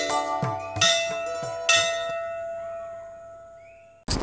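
Channel intro music: struck, chiming notes, the last two about one and one and three quarter seconds in, their tones ringing on and fading slowly away.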